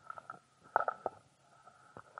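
Irregular rustling and bumping handling noise on a microphone, the loudest bump about a second in, over a faint steady high whine.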